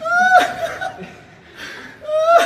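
A person laughing in a high, squealing voice: one held note about half a second long that breaks off sharply, followed by quieter breathy laughter.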